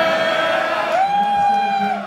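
One voice's long, drawn-out shout of "yeah", held on one pitch and then stepping up to a higher held note about a second in.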